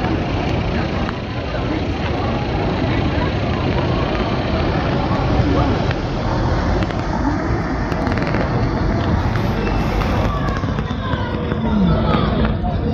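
City street ambience: a steady rumble of passing traffic with a hubbub of distant voices.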